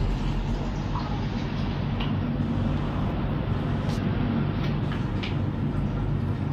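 Steady whir and low hum of a nail dust collector's fan running, with a few faint clicks.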